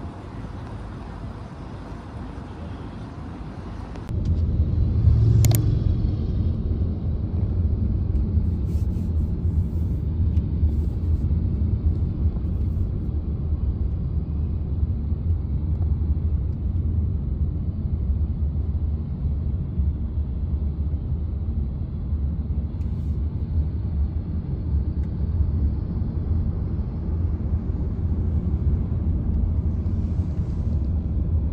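Steady low road and engine rumble inside a moving car's cabin. It starts abruptly about four seconds in, after a few seconds of quieter outdoor ambience. There is a single sharp click shortly after the rumble begins.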